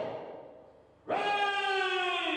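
A man singing through a microphone in long held notes. One note fades out early on, then after a short dip a new long note starts about a second in, sagging slowly in pitch, with some room echo.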